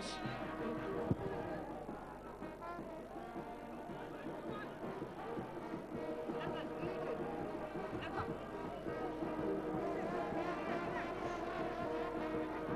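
Stadium crowd noise with vuvuzelas: several plastic horns droning with long held notes that overlap and come and go.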